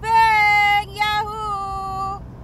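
A woman's high voice holding two long sung notes, the second slightly lower and starting about a second in, over the low road rumble of the car cabin.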